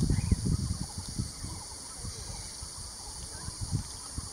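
Outdoor ambience: low, uneven rumbling, strongest in the first second and again briefly near the end, over a steady high hiss.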